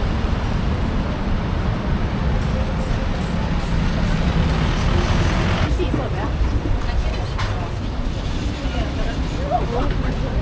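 Outdoor street and market ambience: a steady low rumble of traffic, with indistinct voices of passers-by. The voices come through a little more clearly about six seconds in and near the end.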